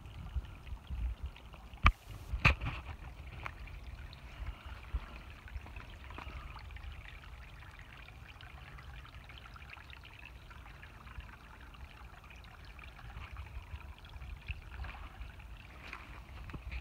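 Shallow creek water trickling over a rock shelf, a steady soft babble, with a low rumble on the microphone and two sharp knocks about two seconds in.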